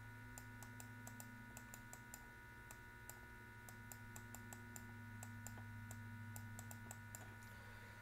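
Faint, irregular clicking while handwriting is drawn on a computer screen, over a steady low electrical hum.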